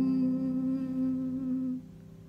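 Piano holding the song's closing chord, several notes ringing steadily together, then cut off short near the end.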